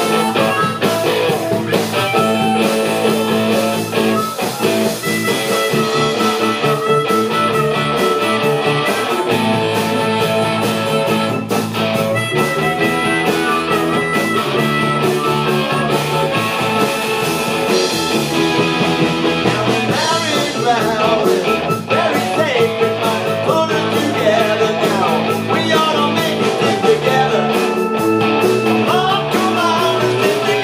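A live rhythm & blues band playing: harmonica lead over electric guitar, bass guitar, keyboards and drums.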